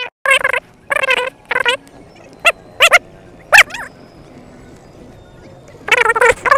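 An animal calling repeatedly in high-pitched cries: three longer wavering calls, then three short sharp yelps, after which it falls quiet.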